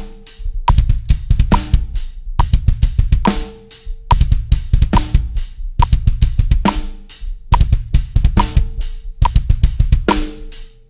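Drum kit playing a broken double bass drum groove: fast, uneven runs of kick drum strokes under a steady snare backbeat with cymbals, the snare cracking a little under once a second.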